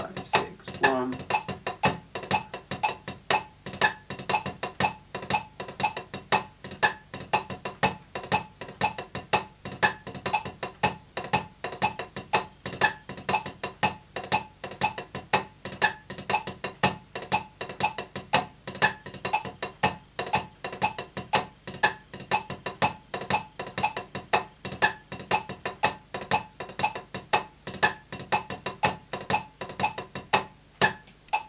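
Wooden drumsticks on a rubber drum practice pad playing the double ratamacue rudiment (two drags then a ratamacue) in a steady, even stream of strokes with about two accents a second. A metronome clicks along at 120 beats per minute.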